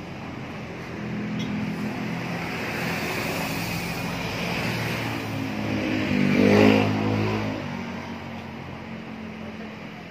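A motor vehicle's engine passing by, growing louder to a peak about six and a half seconds in, then fading away.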